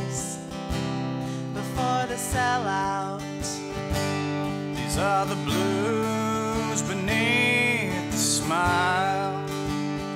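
Acoustic folk instrumental passage: steel-string acoustic guitar strumming chords while a harmonica in a neck rack plays a sliding melody over it.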